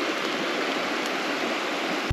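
River water rushing steadily over a shallow rapid, an even hiss at a constant level.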